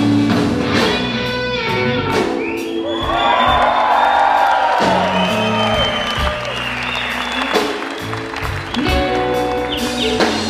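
Live blues-rock band playing: electric guitar, bass and drums. A few seconds in, the bass and drums drop back under a sustained lead guitar passage with bending notes, and the full band comes back in about two seconds later.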